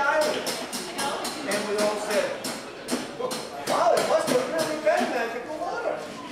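Men's voices making sounds without clear words, over a quick run of sharp taps or clicks, about four a second.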